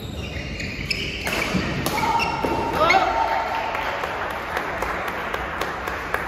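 Badminton rally on an indoor court: sharp racket hits on the shuttlecock and shoes squeaking on the court mat, in a large hall. Voices call out about halfway through as the point ends.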